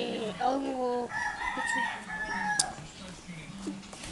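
A rooster crowing once: a few short notes, then one long held note about a second in.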